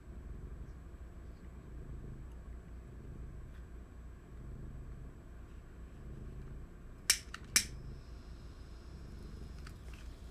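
Low room hum, broken by two sharp clicks about half a second apart some seven seconds in, followed by a faint high thin tone for about two seconds.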